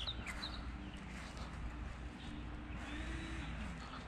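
Steady low hum of an engine running, its tone dropping in pitch near the end, with a few short high bird chirps at the start.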